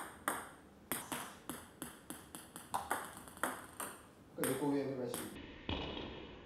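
Table tennis ball knocking off the paddle and table in quick, uneven succession, about a dozen short, sharp pings, as serves are played.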